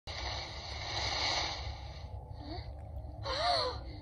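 Anime soundtrack played through a tablet's speaker: a rustling hiss of grass being pushed aside, then a short breathy gasp from a girl's voice, its pitch rising and falling, about three and a half seconds in.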